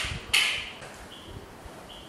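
A man's breathy hiss through the teeth, twice in the first half second, each short and fading out.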